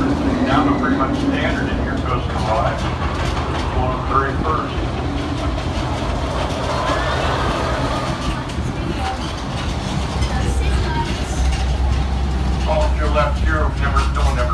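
Park tram running along with a steady low engine rumble that grows heavier near the end, under indistinct talking.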